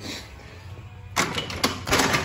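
A quick clatter of sharp clicks and knocks that starts just over a second in and lasts about a second, as objects are handled in a workshop.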